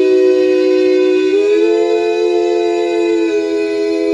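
Bluegrass vocal harmony sung a cappella: several men's voices holding long sustained notes together, the chord moving to new notes about a second and a half in and again past three seconds.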